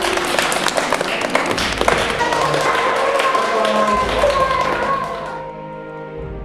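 A group of young children clapping their hands, a dense run of claps that stops about five and a half seconds in, with background music playing throughout.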